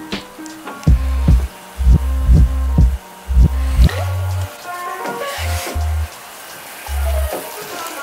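Background music with a deep bass line and a steady drum beat.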